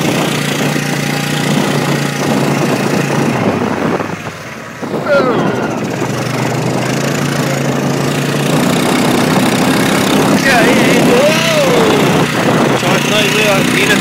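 A vehicle's engine running as it drives over a rough grassy track, with wind and rattle noise. The engine note drops briefly about four seconds in, then picks up and rises again.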